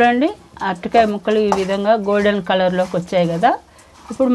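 A woman speaking, in continuous talk that stops shortly before the end.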